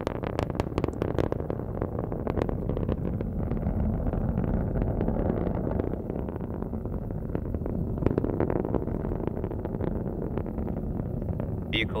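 Falcon 9 first stage in powered ascent, its nine Merlin 1D engines throttled back through maximum aerodynamic pressure: a steady low rumble with crackling at the start and again about eight seconds in.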